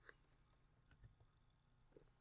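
Near silence broken by a few faint, short computer keyboard clicks, mostly in the first second.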